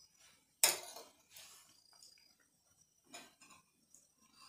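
A metal spoon clinking against an oyster shell on a glass plate while scooping out raw oyster: one sharp clink about half a second in, then a few softer knocks and scrapes.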